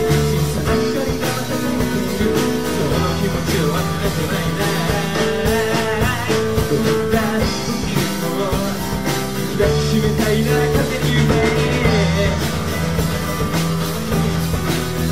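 Live band playing a rock song: strummed acoustic guitar, drum kit keeping a steady beat, and keyboard, with singing over it.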